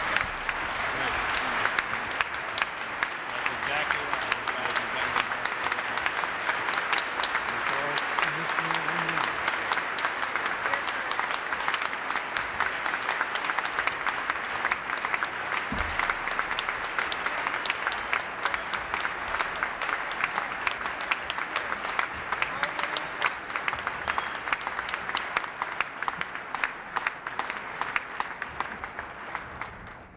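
A large banquet audience applauding: a long, dense round of clapping that thins out and fades toward the end.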